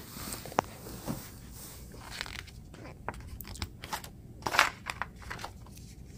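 Paper booklet being handled and its pages turned by hand: a few faint isolated clicks, then a run of short paper rustles and crackles, loudest about four and a half seconds in.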